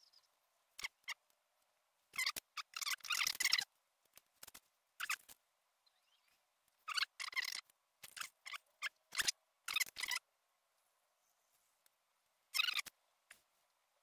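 Short scratchy crinkles and rubs of a vinyl decal and its paper backing being peeled and pressed onto a bicycle handlebar, in separate bursts with quiet gaps between, the longest about two to three and a half seconds in.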